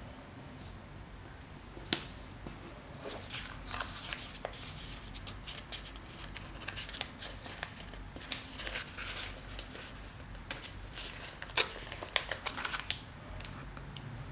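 Quiet handling of stickers and planner paper: scattered soft rustles and light taps as stickers are peeled and pressed down, with a few sharper clicks.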